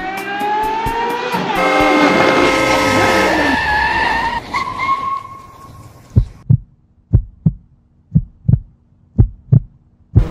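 Dramatic sound effects: a pitched swell rises into a held chord, slides down and fades out. Then comes a heartbeat effect of four double thumps, about one a second.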